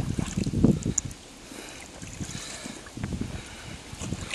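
Lake water sloshing and splashing as a carp is let go from the hands and swims off. It is loudest in the first second, then settles to faint lapping.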